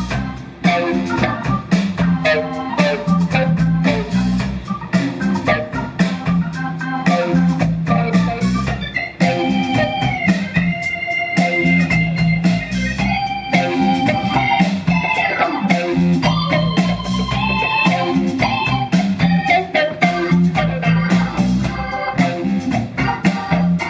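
Live blues band playing: electric guitar, keyboard and drums.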